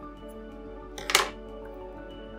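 Soft background music with sustained tones; about a second in, one short sharp clatter as small metal scissors are set down on a wooden table.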